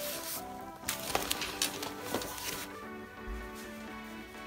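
Background music with steady held notes, and in the first second or so rustling and a few light knocks from the backpack being handled.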